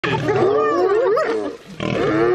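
Several wild animals calling over one another in wavering, pitched cries that rise and fall, with a brief lull about one and a half seconds in.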